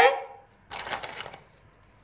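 A clothespin being clipped onto the edge of a cardboard face, a short scraping rustle about a second in.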